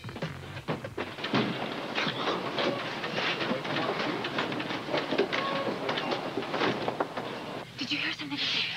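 Hushed, indistinct voices over a steady rushing noise.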